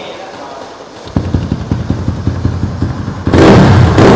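Yamaha Exciter's single-cylinder, four-valve, liquid-cooled engine. About a second in it begins running with uneven low pulses, and near the end it is revved loudly.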